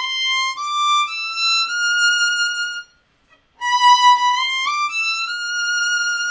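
Solo violin played slowly: a short phrase climbing stepwise from a high B, played twice with a brief pause between, to show the finger spacing through a shift.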